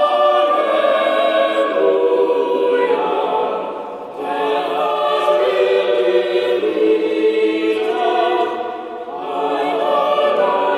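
Church choir of boy trebles and men singing a slow sacred choral piece in long sustained phrases, with brief breaks between phrases about four and nine seconds in.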